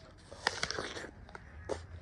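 A bite into a crisp red apple about half a second in, followed by crunchy chewing with a few more short crunches.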